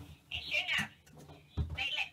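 A voice talking in two short bursts over a phone call, heard through the phone's speaker and sounding thin, with no treble.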